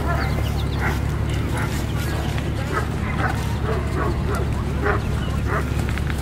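A dog barking repeatedly in short, high yips, two or three a second, over a steady low rumble.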